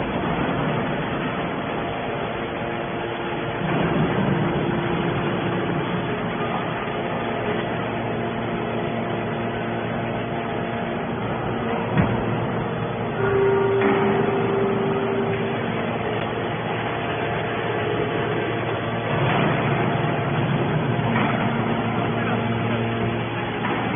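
TCM hydraulic scrap metal baler running, a steady mechanical hum from its hydraulic power unit. A single sharp click comes about twelve seconds in, then a steady tone for about two seconds.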